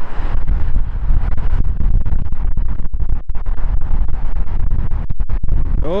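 Strong gusty wind buffeting the microphone: a loud, ragged low rumble with brief dropouts.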